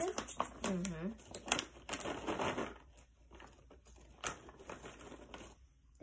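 A plastic snack bag crinkling and crackling as snacks are taken out of it: a quick run of crackles over the first few seconds, then quieter with a single click.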